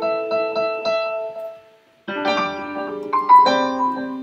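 MainStage's sampled Steinway grand piano played from a MIDI keyboard: a run of chords and quick notes, a short break about halfway through, then a new phrase of chords.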